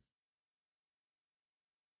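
Near silence: a gap in the podcast audio, with no sound at all.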